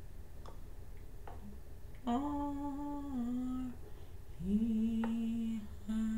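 A woman humming a slow tune without words in long held notes: the first comes about two seconds in and holds for over a second, a lower one follows at about four and a half seconds, and a third begins at the end.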